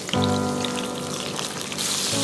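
Hot oil sizzling in a nonstick pan as chopped scallion, ginger and garlic fry and a spoonful of Pixian chili bean paste goes in. The sizzle grows louder near the end. Soft background music plays along.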